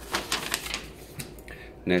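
Handling noise close to a cardboard shipping box: a quick run of light clicks and scrapes in the first second, then a few scattered clicks.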